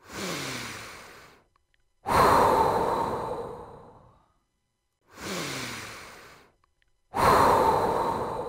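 Slow, deep human breaths paced for a breathing exercise: twice, a quieter breath of about a second and a half followed by a louder, longer one of about two seconds, with short silences between them.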